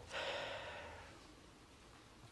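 A man breathing out audibly into a close microphone, a soft sigh-like exhale lasting about a second before fading away.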